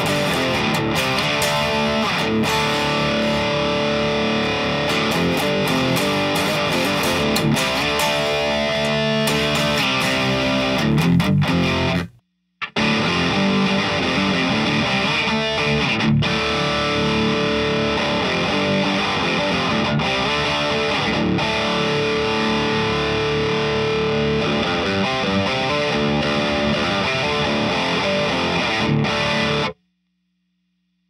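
Heavily distorted electric guitar riffing through a DAE Duality DX drive pedal on its red channel, gain-stacked into an already gained-up amp for extra compression and saturation, heard from a mic'd isolation cabinet. The playing drops out for about half a second about twelve seconds in and stops abruptly just before the end.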